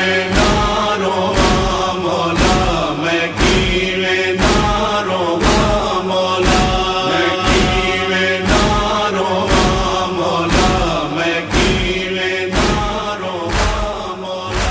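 Noha lament track: a chorus of voices chanting a slow, mournful line over a steady beat that falls about once a second.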